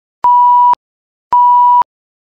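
Test-card stand-by beep: a single high pure tone sounding twice, each beep about half a second long with an equal gap of silence between. It is the 'please stand by' interruption signal laid over colour bars.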